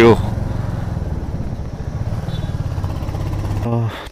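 Royal Enfield Hunter 350's single-cylinder engine running steadily at road speed, a low pulsing exhaust note heard from the rider's seat.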